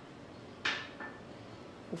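Small glass bowl set down on a granite countertop: a sharp clink with a brief ring about two thirds of a second in, then a lighter tap about a second in.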